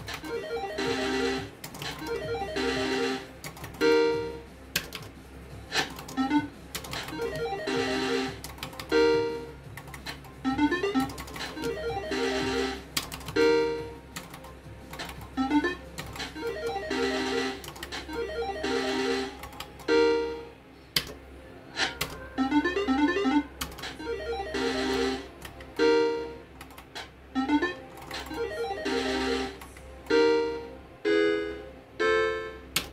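Electronic slot machine playing its synthesized game tones and chime jingles, a new short sequence every couple of seconds as the reels are spun again and again.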